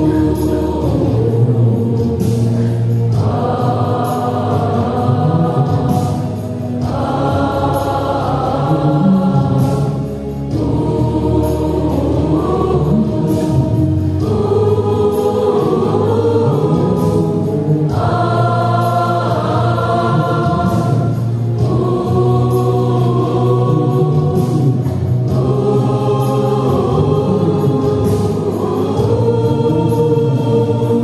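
Mixed church choir of men and women singing a hymn together, in sustained phrases with short breaks between them.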